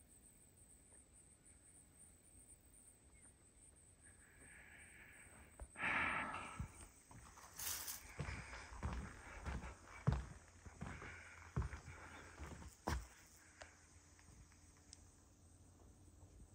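Faint footsteps on a wooden boardwalk, irregular steps with a little rustling, starting about six seconds in and stopping a few seconds before the end; near silence before them.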